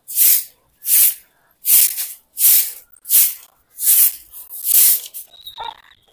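Stiff stick broom swept across a bare concrete roof in quick, regular strokes, a swish about every three-quarters of a second, seven in all, with the sweeping dying away about five seconds in.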